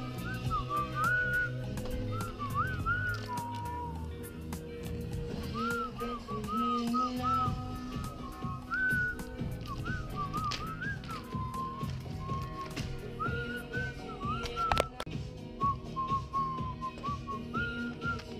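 A whistled tune over background music with a steady bass accompaniment, with scattered light clicks and one sharp click about fifteen seconds in.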